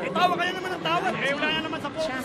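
Speech only: a man talking, with arena chatter behind.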